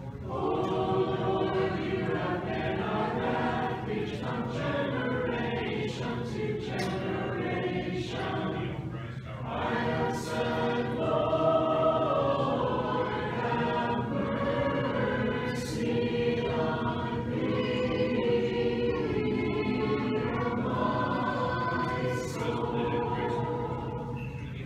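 Church choir singing Orthodox liturgical chant unaccompanied, several voices holding sustained notes in harmony with slow changes of pitch.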